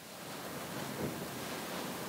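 A steady, even hiss of background room noise, with no voice, fading up at the start and then holding level.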